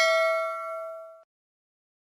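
A single bell ding sound effect ringing out with several steady tones and fading away, ending a little over a second in.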